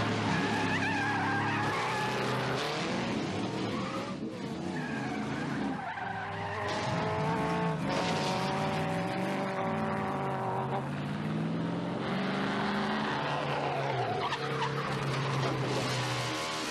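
Car engine revving hard during a chase, its pitch rising and falling again and again, with tires skidding and squealing.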